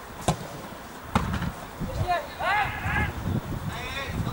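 Two sharp thuds of a football being kicked, a little under a second apart, followed by players shouting to each other on the pitch.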